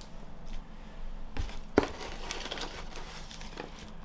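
Rummaging in a cardboard box of packing: two short knocks about a second and a half in, then rustling and crinkling as a clear plastic pot is lifted out.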